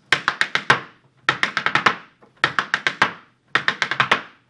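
Irish dance hard shoes striking a wooden portable dance floor: four quick runs of sharp taps, about a second apart, with heel drops between the toe taps of a hop-toe step.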